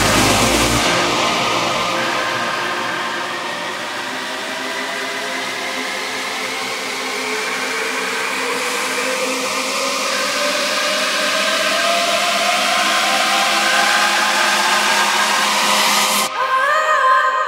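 Melodic techno / progressive house DJ mix in a breakdown: the kick and bass drop out about a second in, leaving sustained synth tones under a rushing noise riser and a slowly rising pitch sweep that builds toward the drop.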